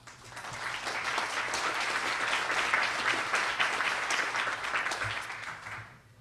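Audience applauding, building up over the first second and dying away near the end.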